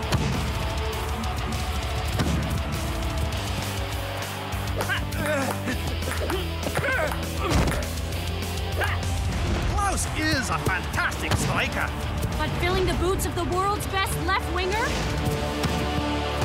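Background music with a steady bass line. From about five seconds in, short wordless vocal sounds come in over it.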